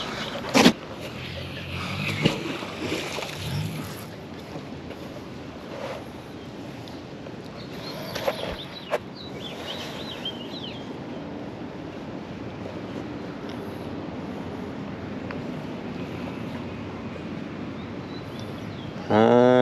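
A heavy rusted iron wheel is set down onto a metal-framed folding cart with a single sharp knock about half a second in. It is followed by steady outdoor background noise and a few faint clicks.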